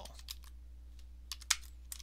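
Typing on a computer keyboard: a handful of separate keystrokes at an uneven pace, the loudest about one and a half seconds in.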